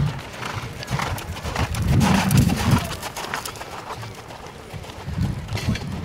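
Hoofbeats of a horse cantering on a sand arena.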